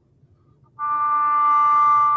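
English horn playing one steady held note, fingered as an A but sounding a fifth lower as concert D. It starts about three-quarters of a second in and is held to the end.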